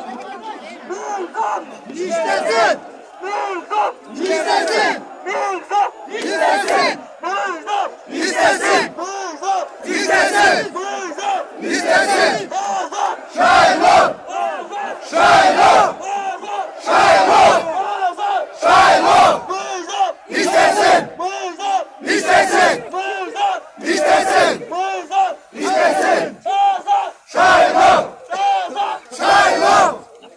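Large crowd of men chanting a short slogan in unison, loud shouts coming in a steady rhythm of about one a second.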